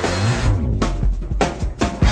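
A live rock band breaks down to a drum fill. After a falling pitch slide at the start, the rest of the band drops out and the drum kit plays separate snare and bass drum hits, and the full band crashes back in right at the end.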